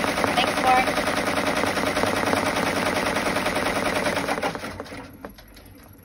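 Brother six-needle embroidery machine stitching at speed, a rapid, even clatter of needle strokes. It winds down and stops about five seconds in, leaving a few separate clicks.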